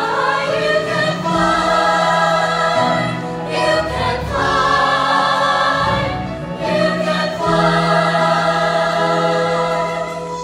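Mixed choir of teenage voices singing a Disney medley in sustained, held chords, with brief breaks between phrases about three and a half and six and a half seconds in.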